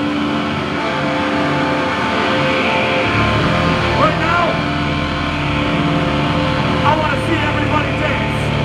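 A hardcore punk band's amplified electric guitars hold sustained notes through the amps, and the low end fills in about three seconds in. A voice comes through the PA a few times over it.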